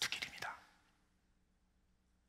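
A man's short, breathy whispered utterance lasting about half a second at the start, followed by quiet room tone.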